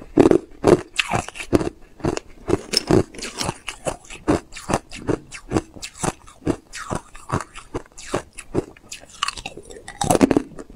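Hard clear ice being bitten and chewed: a steady run of sharp, crisp crunches, about two to three a second, loudest in the first second.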